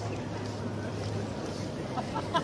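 A steady low hum under a constant haze of outdoor street noise.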